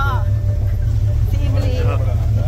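Steady low rumble of a 4x4 off-road vehicle on the move, with wind buffeting the microphone from riding in the open back.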